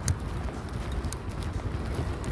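Footsteps on pavement picked up by a body-worn camera, with irregular knocks and light clicks from jostled gear, over a steady low rumble.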